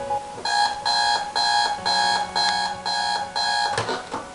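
Digital bedside alarm clock beeping, about two beeps a second. Near the end a sharp knock comes as a hand hits the clock, and the beeping stops.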